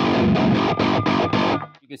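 Distorted electric guitar, an Ernie Ball Music Man Cutlass with light-gauge strings tuned down to a low F-sharp, playing a fast, percussive riff of chugs on the low strings with a bright pop. It stops abruptly about one and a half seconds in.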